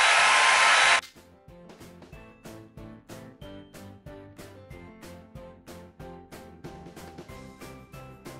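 A hair dryer running on high heat, cut off suddenly about a second in. Then background music with a steady beat of short notes.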